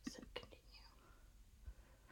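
Near silence, with a few faint computer-keyboard clicks in the first half second.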